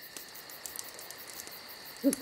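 Faint, steady high-pitched chirring of insects, likely crickets, with light regular ticks.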